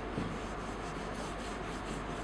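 Faint, steady rubbing of a duster across a whiteboard, wiping off marker writing.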